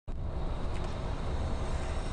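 Steady low rumble of a coach heard from inside the cabin while it drives along a highway: engine and road noise.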